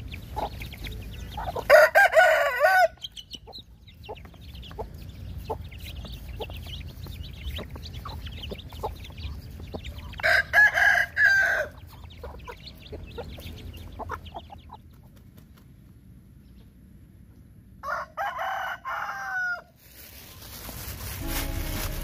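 A rooster crowing three times, each crow lasting about two seconds, with short calls from other chickens in between.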